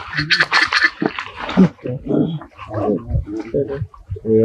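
Macaques calling at close range: a harsh, noisy call in the first second, then a run of short, choppy grunts and squeaks.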